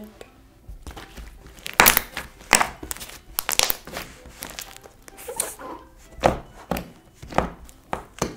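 Thick slime being stretched, squeezed and pressed by hand, giving an irregular string of sharp pops and crackles, the loudest about two seconds in.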